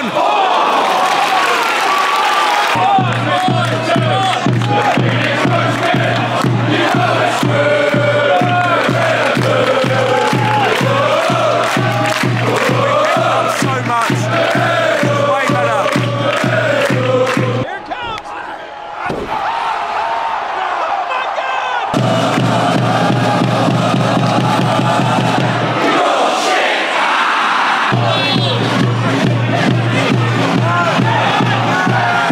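Football crowd chanting and singing in the stand over a steady, regular beat. The sound drops away briefly a little past halfway, then picks up again.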